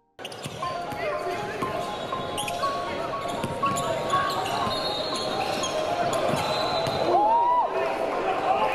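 Live basketball game sound in a gym: sneakers squeaking on the court and the ball bouncing, over the voices of players and spectators.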